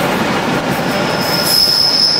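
A train's wheels squealing on a curve, a single high steady tone that sets in about a second in and grows louder, over the steady rumble of wheels on the track.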